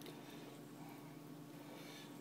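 Quiet room tone: a faint, even hiss with a steady low hum, and no distinct events.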